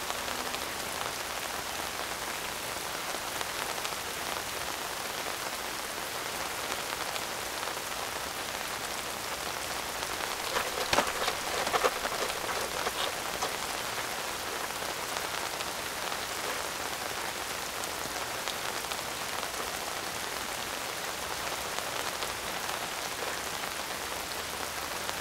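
Steady rain falling, with a few brief louder sounds about eleven to twelve seconds in.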